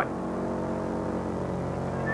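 Aircraft engines droning steadily in flight, an even hum of several steady tones with no change in pitch.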